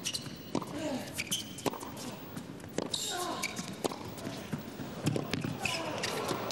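Tennis rally on an indoor court: the ball is struck back and forth by rackets, a sharp pop about once a second.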